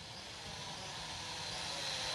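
DEERC D50 quadcopter's propellers whirring in flight, a steady whir that grows gradually louder as the drone comes closer.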